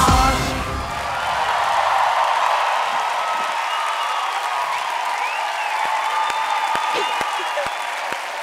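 Pop song stops abruptly about half a second in. A studio audience then applauds and cheers, with whoops rising above the clapping.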